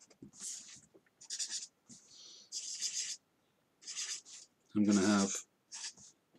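A fine-tip pen scratching across paper in a series of short drawing strokes, with a brief vocal sound about five seconds in.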